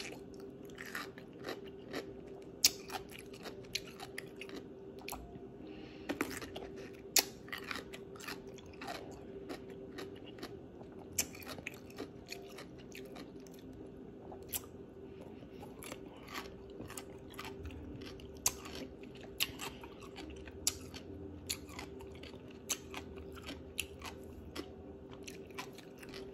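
Close-miked biting and chewing of a crunchy baby dill pickle: sharp crunches every second or so, with wet chewing in between. A steady low hum runs underneath.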